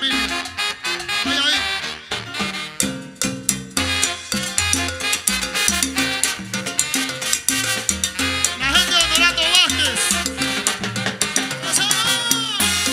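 Live Latin dance orchestra playing salsa-style music: trombone and saxophones over timbales, percussion and a steady, rhythmic bass line.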